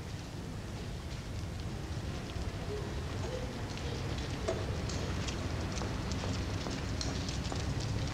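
Two-wheeled handcart rattling and clattering as it is pushed along a wet street, the clatter growing denser and slightly louder from about halfway in as it comes closer, over a steady low street rumble.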